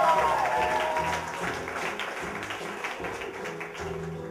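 Background music accompanying the act, with audience applause over it.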